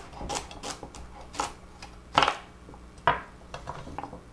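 Kitchen knife chopping a celery stalk on a wooden cutting board: about five or six sharp, irregular chops, the loudest about two seconds in.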